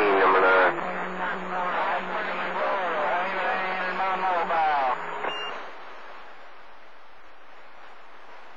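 CB radio receiving a skip transmission: a voice comes through static with a steady low hum and cuts off about five seconds in with a brief high tone, leaving only the receiver's steady band hiss.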